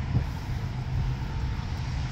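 Steady low outdoor rumble under a faint even hiss, with a brief knock about a fifth of a second in.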